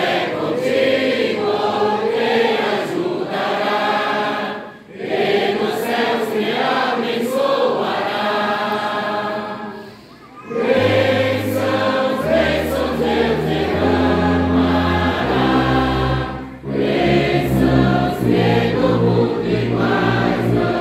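A congregation singing a Portuguese hymn in unison phrases, with short breaths between lines at about five and ten seconds. About eleven seconds in, the church orchestra's brass and saxophones come in with sustained chords and deep tuba bass notes that step from note to note.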